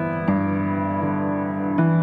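Slow background piano music: sustained notes, with new notes struck twice in the two seconds.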